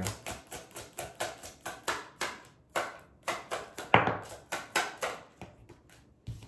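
Tarot cards being shuffled by hand: a quick run of short papery strokes, about four a second, the loudest about four seconds in.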